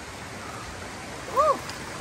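Steady rush of a fast-flowing river running high, with a short voiced exclamation about one and a half seconds in.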